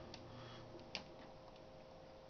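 Near silence with a faint steady hum and a couple of faint clicks, about a second apart, from hands handling stripped stranded copper wire and a small pocket knife.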